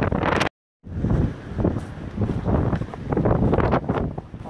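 Strong wind buffeting the microphone in uneven gusts, a deep rumbling noise, broken by a brief dead silence about half a second in where the recording cuts.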